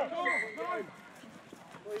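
Men's voices shouting and calling out on a rugby pitch, dying down about a second in, before a man calls "wait" right at the end.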